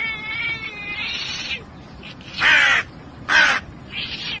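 A ginger cat's long wavering call in the first second and a half, then a hooded crow cawing loudly twice, about a second apart.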